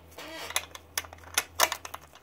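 Metal draw latch on a Ludlum 14C Geiger counter's case being worked by hand to clamp the case shut: a run of sharp metallic clicks and snaps, the loudest about a second and a half in.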